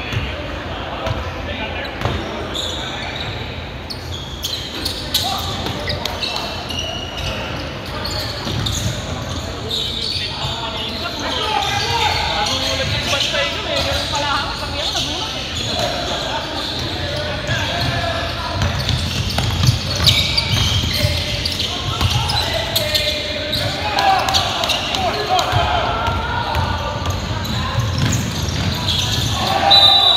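Basketball game on a hardwood gym floor: the ball bouncing and players calling out, all echoing in a large hall.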